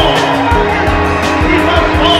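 Background music with a steady beat and pitched instruments, laid over the footage.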